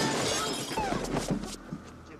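Glass shattering in a movie fight: a loud crash, then pieces falling and scattered knocks for about a second and a half.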